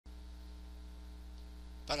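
Steady low electrical mains hum picked up in the recording, with a man's voice starting right at the end.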